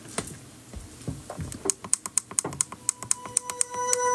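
Quick, irregular light clicks like typing, several a second. About three seconds in, steady electronic tones start under them as music begins.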